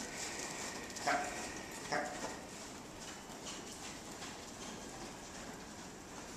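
A ridden horse's hoofbeats on the soft sand footing of an indoor arena. Two short vocal sounds, the loudest things heard, come about one and two seconds in.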